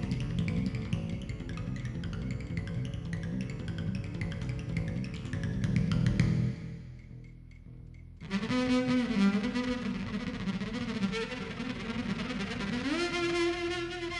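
Bowed double bass with drums and cymbals struck with mallets, a busy low rumble of strikes over the first six seconds or so. After a short quieter stretch, the arco bass carries sustained sliding notes and climbs higher near the end.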